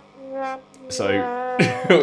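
A man's voice: a short vocal sound, then a drawn-out "so" held on one pitch that breaks into a laugh near the end.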